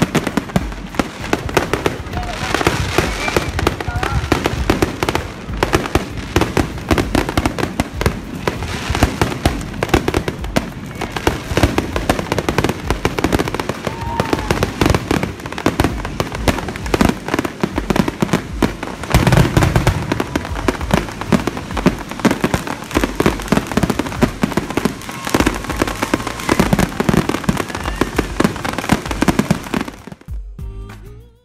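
Fireworks going off in rapid succession, a dense run of crackles and bangs, with a heavier burst about two-thirds of the way through.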